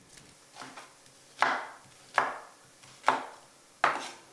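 Large kitchen knife chopping an onion into wedges on a wooden chopping board: a faint first cut, then four firm knife strikes against the board, each under a second after the last.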